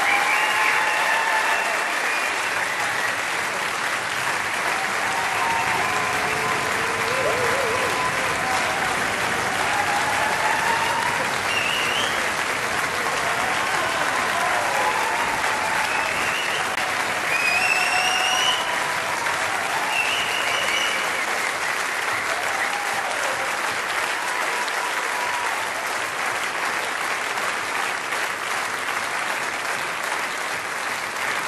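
Concert audience applauding steadily, with scattered shouts and whistles through the clapping.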